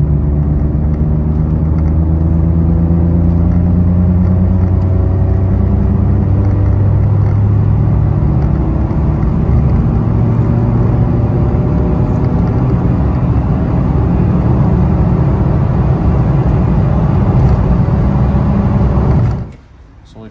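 Citroen C1's 1.0-litre three-cylinder 1KR engine pulling hard under load in third gear uphill, heard from inside the cabin. Its note climbs steadily in pitch as the car accelerates, with the exhaust fitted with a silencer insert, and the sound cuts off abruptly near the end.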